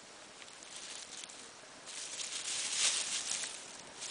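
Nine-banded armadillo digging and rooting through dry leaf litter: a crackling rustle of leaves and twigs that grows louder about halfway through.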